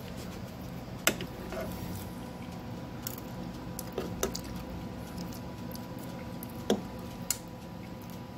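A metal fork clicking and tapping against a nonstick grill pan while working through mashed potatoes. About six sharp, irregular clicks over a steady low hum.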